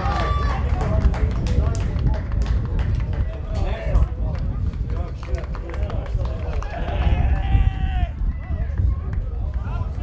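Footballers shouting to each other on the pitch, with a longer call near the end, over a steady low rumble and scattered sharp knocks.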